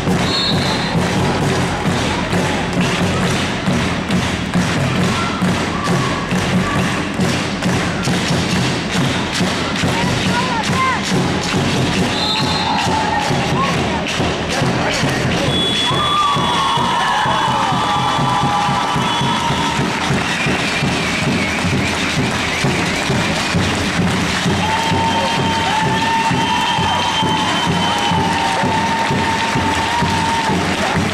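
Indoor handball play in an echoing sports hall: a ball bouncing and thudding with footsteps, short squeaks of shoes on the floor, and spectators' voices over a steady hall murmur.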